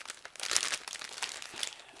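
A clear plastic bag crinkling as it is handled: irregular crackles, loudest about half a second in.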